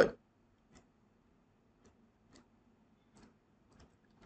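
Faint, scattered clicks of a computer keyboard and mouse, about five soft taps spaced irregularly, as text in a code cell is edited.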